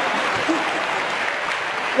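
A large audience applauding, a steady, dense clatter of clapping with a few faint voices mixed in, easing off slightly near the end.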